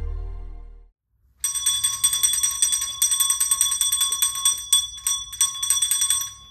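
Background music fading out. After a short gap, a small hand bell is shaken hard and fast for about five seconds, its ringing trailing away at the end.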